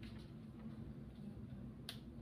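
Faint paper handling: a manila envelope being opened and a sheet of paper drawn out of it, with one sharp click near the end.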